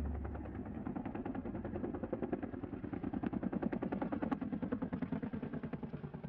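Tandem-rotor Chinook helicopter, a Columbia Model 234 LR, with its rotor blades beating in a fast, even train of low thuds. The thuds grow louder through the middle and ease a little near the end.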